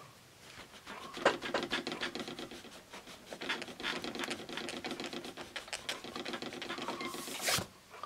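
Pink Pearl eraser rubbing back and forth on paper in quick scratchy strokes, erasing soft B pencil graphite. A short swish comes near the end, and the rubbing stops.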